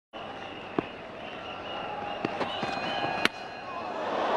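Stadium crowd noise with wavering whistles, growing louder, broken by a few sharp knocks. The loudest is a single crack about three seconds in, a cricket ball from a fast bouncer striking the batsman's helmet.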